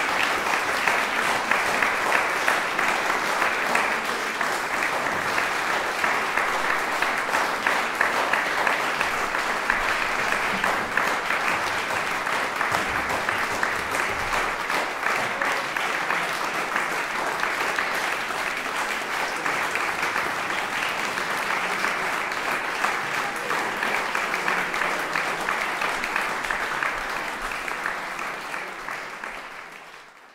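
Sustained applause of many hands clapping, steady and even, fading out over the last few seconds.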